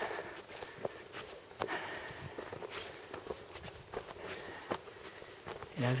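Footsteps on a loose, stony gravel trail, uneven steps of someone climbing a steep path.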